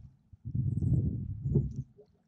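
Oars of an inflatable rowboat working in their oarlocks on the rowing frame during a stroke, making low knocking and creaking sounds. The sound starts about half a second in and stops just before the end.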